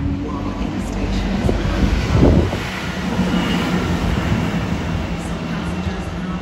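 Class 165 diesel multiple unit passing through the station: a steady diesel engine hum under rail and wheel noise, swelling loudest about two seconds in.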